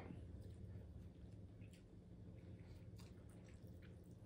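Near silence: room tone with a faint low hum and a few very faint small clicks.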